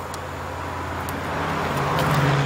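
A road vehicle approaching, its low engine hum and tyre noise growing steadily louder.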